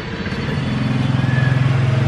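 Yamaha FZ155 (Vixion R) 155 cc single-cylinder engine idling with a steady low pulse, coming up and growing louder about a third of a second in.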